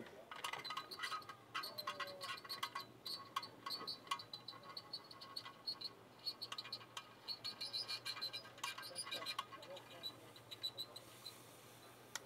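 Faint, irregular crackling and sizzling of flux and molten soft solder under the hot tip of a heavy-duty D-550 dual-heat soldering gun as it is drawn along a stainless-steel-to-brass joint, over a low steady hum.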